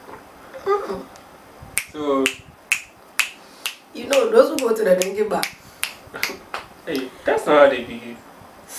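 A woman snapping her fingers over and over, a quick, slightly uneven run of sharp snaps from about two seconds in to near the end, with her voice coming in between the snaps.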